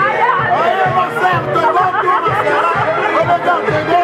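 Dance music with a steady beat, about two beats a second, with several voices chattering over it.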